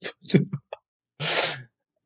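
Men laughing: a few short, breathy bursts of laughter, then a louder breathy burst of laughter about a second and a half in.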